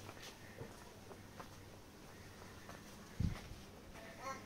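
Quiet ambience with faint scattered ticks and taps. A single dull low thump a little past three seconds in.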